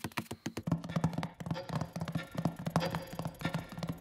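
Cartoon sound effect of a big clock's works ticking rapidly, a run of sharp clicks several a second, with a low tone that comes and goes, under light music.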